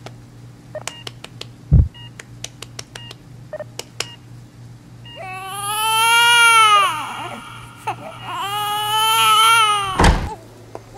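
A newborn baby crying in two long wails, the first starting about five seconds in and the second near the end. Before the cries there are a few short high beeps and scattered faint clicks.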